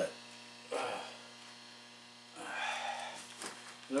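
A winter boot being worked off a foot: a short grunt of effort about a second in, then about a second of scuffing and rustling near the end as the boot comes off and comes apart. A steady electrical mains hum runs underneath.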